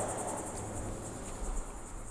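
Crickets chirping in a fast, even, high-pitched pulsing trill over a low steady hum.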